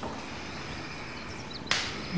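Quiet room ambience with a few faint bird chirps from outside, and near the end one short, sharp intake of breath.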